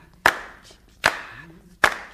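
Hand claps keeping time in a sparse rock song intro: three sharp claps a little under a second apart, each with a reverberant tail, and a faint sung voice between them.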